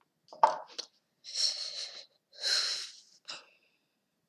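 Two short clicks in the first second, then a person breathing out hard twice, each breath about a second long, close to the microphone.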